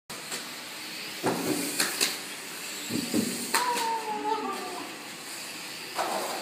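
Indistinct voices of people talking in a room over a steady background hiss, with a drawn-out voice-like sound in the middle.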